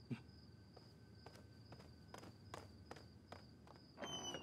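Near silence: faint, soft footsteps, a light step about every third of a second through the second half, over a faint steady high-pitched hum.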